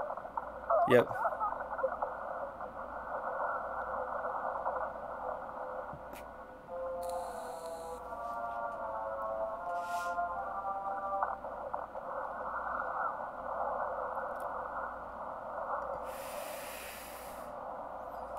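Movie soundtrack played through a narrow band-pass filter, so that it sounds thin and muffled like a telephone line: film dialogue and action sound, with a stretch of held, stacked tones from about seven to eleven seconds in. A short burst of hiss comes near the end.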